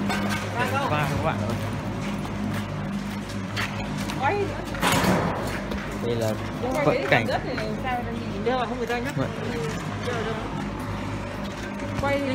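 Indistinct voices talking, with music playing underneath and a steady low hum.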